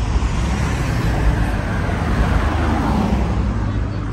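Road traffic running along a street, with one vehicle passing close by in the middle, its noise swelling and then falling away.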